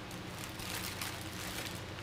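Soft rustling and handling noise as items are pulled from a shopping bag, over a low steady hum.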